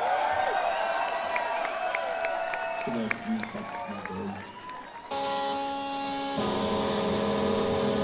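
Rock band's live instruments between songs: loose wavering notes, then about five seconds in a sustained chord starts suddenly and shifts to another held chord a second later, with audience voices underneath.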